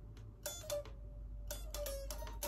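Electric guitar being picked in short runs of sharp, separate notes: a few about half a second in, then another quick run from about a second and a half in.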